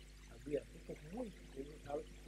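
Soft, hesitant fragments of a man's speech, much quieter than his normal talking, over a steady low electrical hum.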